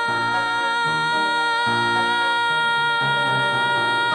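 A woman's voice singing one long held high note in musical-theatre style over instrumental accompaniment whose chords change beneath it, the note starting to waver with vibrato near the end.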